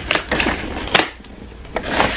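Cardboard shipping package being opened slowly by hand: four short scrapes and taps of cardboard, the loudest about a second in.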